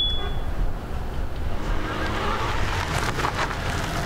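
A brief high electronic beep from a phone app at the start, then street noise with a vehicle pulling up, swelling about two to three seconds in.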